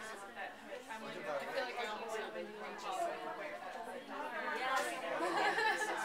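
Many people talking at once, overlapping conversations of a crowd in a room, growing a little louder toward the end.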